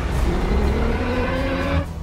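Film sound design for Mechagodzilla moving: a mechanical whine rising in pitch over a deep rumble, dropping away just before the end.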